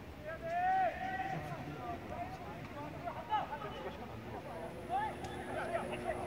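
Voices shouting across a football pitch: one long call near the start, then scattered shorter shouts, with no words clear.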